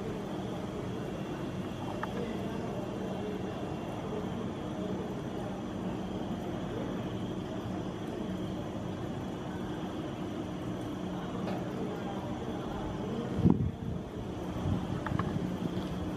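Steady low background hum, like distant traffic, with a few faint steady tones in it. A single short knock comes about thirteen and a half seconds in.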